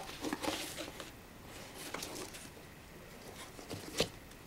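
Faint rustling and light taps of hands handling a decorated cardboard box, busiest in the first second, with a small click near the end.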